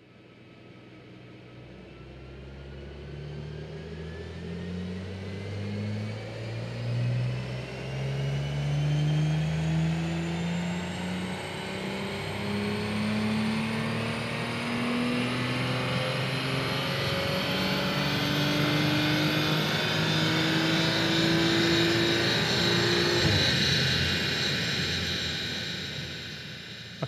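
Audi RS4 B9's 2.9-litre twin-turbo V6, on its Stage 1 tune, pulling at full throttle on a chassis dyno. The engine revs rise steadily through one long run, growing louder, with a high whine climbing alongside. The engine backs off shortly before the end.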